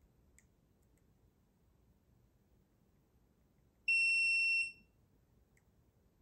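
Electronic gemstone tester giving a single high beep just under a second long as it takes a reading on a stone, which tests as amethyst. A couple of faint clicks come before and after the beep.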